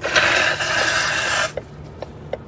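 A man blowing his nose hard into a tissue, one long blow of about a second and a half that stops suddenly.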